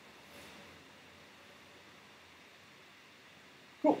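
Faint, steady background hiss of room tone over a call line, with no distinct event. A single short spoken word cuts in just before the end.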